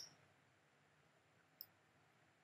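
Near silence broken by two faint, brief clicks of a computer mouse button, one at the very start and a smaller one about one and a half seconds in.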